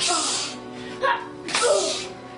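A child laughing and exclaiming in loud, breathy bursts ("Ha!") over music playing in the background.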